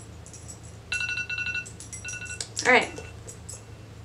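Electronic timer alarm beeping in quick pulses for about a second, with another brief beep a moment later, marking the end of a six-minute countdown. A short vocal sound that bends up and down in pitch follows.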